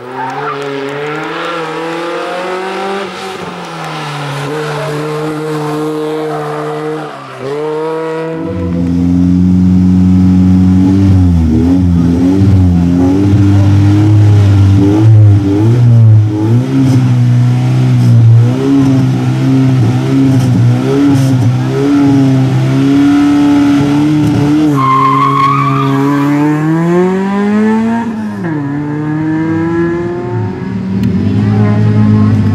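Race car engine. At first it passes at moderate revs with a brief lift near the eighth second. Then, close by, it is held at high revs with small wavering blips, and it climbs steeply in pitch for a few seconds before dropping at a gear change near the end.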